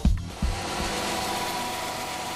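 Music stops with a last beat, then a steady mechanical hum with faint constant tones.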